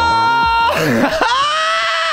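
A man screaming: two long, high-pitched held yells, the second a little lower in pitch, with a short break between them about a second in.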